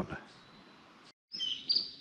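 A few short, high bird chirps over faint background noise, starting about halfway through after a brief moment of total silence.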